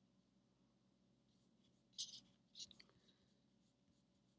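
Near silence: quiet room tone, broken about two seconds in by a short sharp noise and, half a second later, a second, softer cluster of brief noises.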